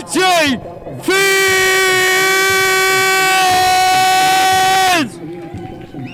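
A single voice through a PA: a short bit of speech, then one long held shout on a steady pitch lasting about four seconds, which breaks off about five seconds in.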